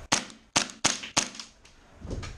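Four single shots from an airsoft rifle fired on semi-auto, each a sharp crack, at uneven intervals within about a second; the gun's hop-up is not working.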